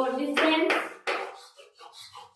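Chalk writing on a blackboard: short scratches and taps as a word is written, after a brief stretch of speech.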